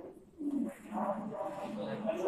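A low-pitched person's voice with no clear words, starting about half a second in.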